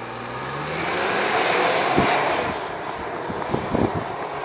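2020 Ford Explorer ST driving past on a wet road. A faint engine note near the start gives way to a rush of tyre and wind noise that swells over the first second or two, then eases off, with a few light knocks near the end.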